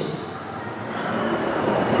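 Steady rushing background noise.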